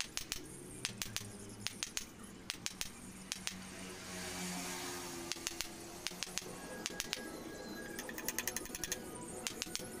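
Claw hammer striking the end of a small wooden knife handle, driving the blade into it: sharp light taps in irregular groups, with a quick run of taps near the end, over background music.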